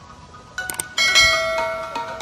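Subscribe-button sound effect: a couple of quick clicks, then a bright bell chime struck about a second in that rings on and slowly fades.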